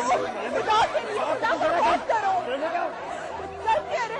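Crowd chatter: several voices talking over one another at once.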